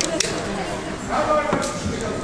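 Voices talking in a large, echoing sports hall, with a sharp knock shortly after the start and another about a second and a half in.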